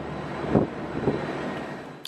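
Steady outdoor city noise of distant traffic, with two short bumps about half a second and a second in.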